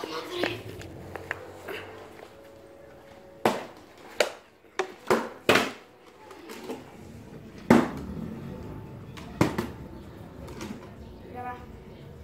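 Plastic water bottles knocking onto a concrete floor, several sharp knocks at uneven intervals, a quick run of four about halfway through and two more later.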